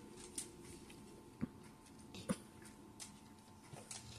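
Quiet room tone with two faint, short clicks about one and a half and two and a half seconds in, from a dog nosing at a cheese-ball treat held to its mouth.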